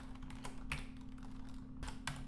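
Typing on a computer keyboard: irregular keystroke clicks, several a second, over a faint steady hum.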